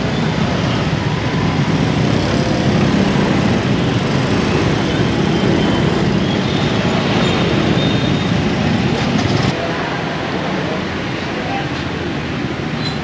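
Steady, loud noise of busy street traffic with indistinct voices in the background. It drops to a quieter level about three-quarters of the way through.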